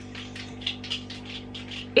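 A steady low hum with faint, quick soft rustles over it, several a second.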